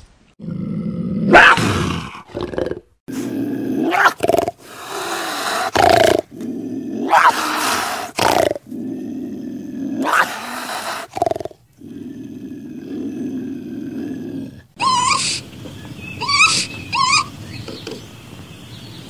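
Animals growling and crying out in a string of short snippets that start and stop abruptly. Near the end come several shorter, higher cries rising and falling in pitch.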